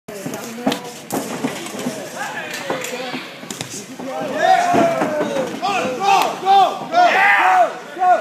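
Spectators and cornermen shouting over one another at a cage fight, the yelling louder from about halfway through. A few sharp smacks of impacts come in the first four seconds.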